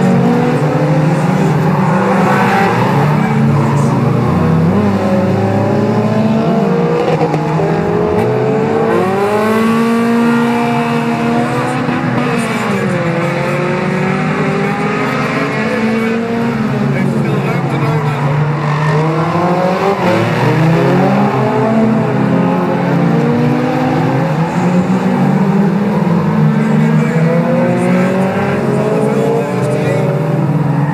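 Several 1600cc-class autocross cars racing on a dirt track, their engines revving up and down as they pass and slide through the bend. The pitch of the engines rises and falls again and again, with several engines heard at once.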